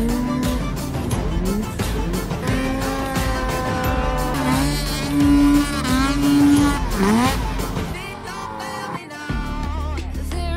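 Snowmobile engine revving up and down in several sharp sweeps over a background music track. The engine sound drops away a little after nine seconds.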